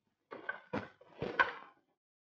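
Telephone handset being set down onto its cradle: a few short clattering knocks, the loudest about a second and a half in.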